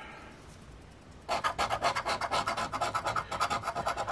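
Coin scraping the latex coating off a scratch-off lottery ticket in quick back-and-forth strokes, starting about a third of the way in.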